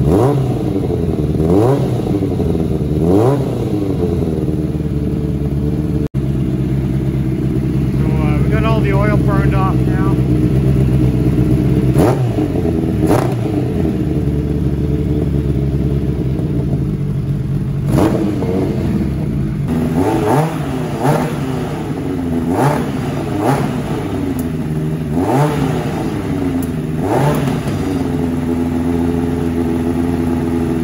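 1986 Suzuki GSX-R750's oil-cooled inline four with a Yoshimura exhaust, running loud at idle and blipped again and again, the blips coming quicker near the end. With the choke off it stutters slightly coming off idle, a sign that it is running a little lean.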